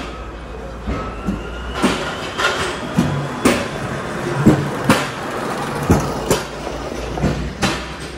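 Irregular sharp clacks and knocks, about two a second, over a low steady hum: the clatter of a busy warehouse with a concrete floor.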